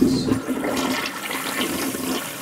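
Toilet flushing: a rush of water that slowly dies down.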